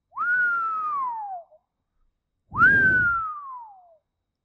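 A person whistling twice in amazement. Each whistle is a quick rise and then a long falling glide in pitch. The second one starts about two and a half seconds in, is louder, and carries some breath noise.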